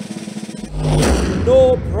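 Snare drum roll that ends about half a second in on a loud crash hit with a low boom, a reveal sting for the result.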